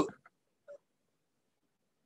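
The trailing end of a man's spoken word, then dead silence, broken only by a brief faint sound under a second in.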